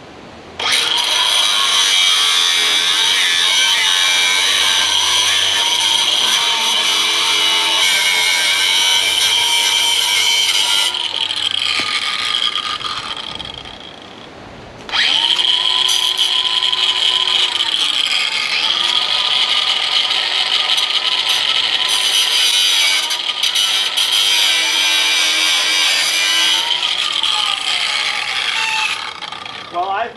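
Hand-held angle grinder running in two long spells with a short stop between them. Its whine sags in pitch now and then as the wheel bites under load.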